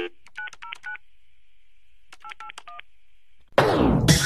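Touch-tone telephone keypad dialing: a quick run of keypad beeps, a pause, then a second run, over a faint steady tone. About three and a half seconds in, loud music starts with a falling sweep.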